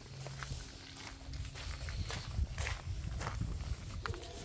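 Faint footsteps: a few uneven steps, mostly in the second half, over a low steady rumble.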